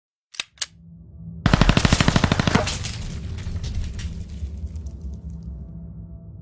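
Machine-gun fire sound effect: two sharp clicks, then a rapid burst of about a dozen shots, roughly ten a second, lasting a little over a second. It trails off into a long rumbling echo over a low steady hum.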